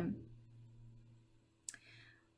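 A single sharp click about three-quarters of the way through, over a faint low hum, as the end of a spoken word fades out.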